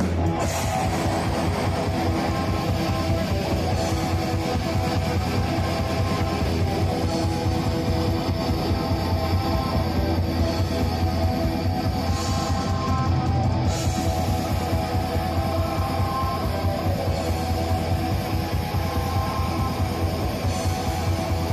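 Live black metal played loud by a full band: distorted electric guitars over fast, dense drumming.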